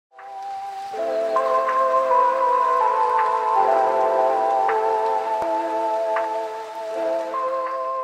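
Intro music: sustained, softly changing chords with a light chiming note about every second and a half.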